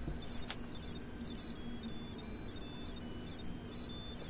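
Small speaker driven by an Arduino playing high, buzzy electronic beeps, sets of C-major-scale notes that change in steps a few times a second. Each step is the next cool-lex combination, with every lit LED sounding its own note.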